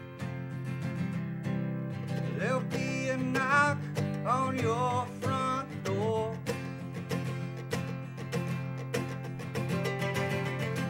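A country-bluegrass band playing an instrumental break: steady acoustic guitar strumming, with a fiddle playing a sliding, swooping melodic fill from about two to six seconds in.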